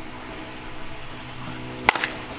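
A bat striking a pitched baseball: one sharp crack near the end, over a steady low hum.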